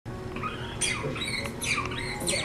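Pink rubber squeaky dog toy squeaking as a puppy chews on it: a few short, high-pitched squeaks, starting about a second in.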